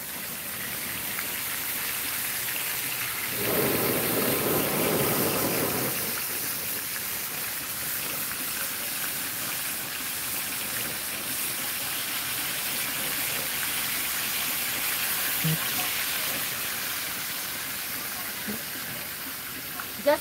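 Flour-dredged mutton snapper pieces flash-frying in hot oil in a skillet, a steady hissing sizzle. It swells louder for a couple of seconds about four seconds in.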